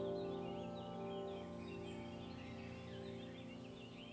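Soft ambient background music: sustained chords slowly fading away, with faint twittering birdsong high above them.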